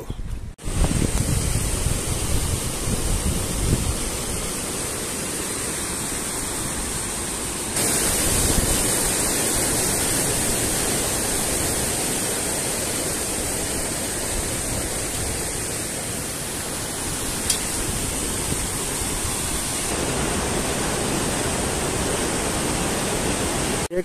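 Steady rush of fast-flowing water, a mountain river or waterfall, with an even hiss. It jumps a little louder and brighter about 8 seconds in and shifts again near 20 seconds.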